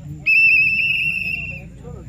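Referee's pea whistle blown once, a single trilled, high whistle lasting about a second and a half.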